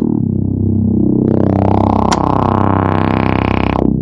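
A loud, held synthesizer chord with a rapid, even flutter and a sweeping, phasing effect. Brighter upper notes join about a third of the way in, with a single click near the middle, and the chord cuts off just before the end.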